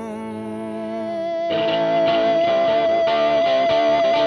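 Psychedelic hard rock with no vocals. A held chord fades, then about a second and a half in, a guitar starts picking a quick run of notes over a sustained high note.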